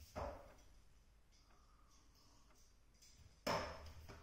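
Two short, sharp sounds from wooden-sword swing practice on a wooden floor: a weaker one right at the start and a louder, sudden one about three and a half seconds in.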